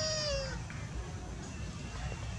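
Infant macaque giving one short, high-pitched coo at the start, held level and dipping slightly in pitch as it ends about half a second in.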